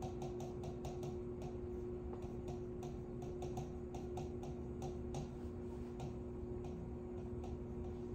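A stylus tip clicking and tapping on the glass of an interactive touchscreen board while words are handwritten on it: quick, irregular clicks, a few each second. A steady low electrical hum runs underneath.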